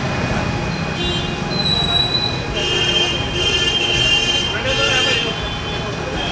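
Street background noise: traffic running with indistinct voices, and a high-pitched squeal-like tone for about two seconds in the middle.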